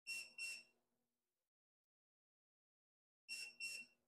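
Oven's electronic beeper: two short high beeps, then another pair about three seconds later. It is the oven signalling that it has finished preheating.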